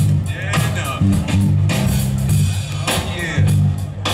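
Live band playing: an electric bass line moving between notes under drum-kit strikes, with electric guitar and saxophone.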